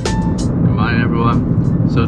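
Steady road and engine rumble inside a moving car's cabin, with a man starting to talk over it about half a second in.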